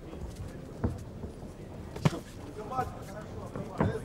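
Three sharp thuds of a boxing exchange in the ring, roughly a second or more apart, over a steady low murmur of the arena crowd.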